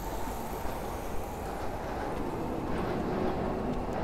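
Steady low rumbling noise of a city street, even throughout with no distinct events.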